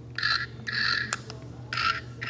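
Novelty pig-face bag clip playing three short electronic oinks through its small speaker as it is pressed by hand, the last one shorter.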